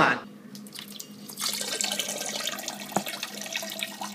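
Steady splashing of liquid pouring into a toilet bowl, with one short click about three seconds in.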